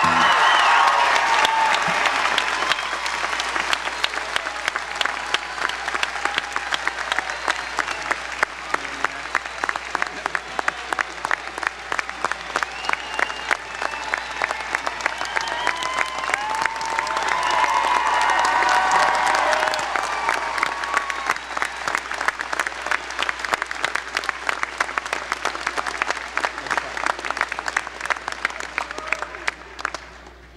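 A large crowd applauding with dense, continuous clapping and some shouting and cheering voices. The cheering swells a little past halfway.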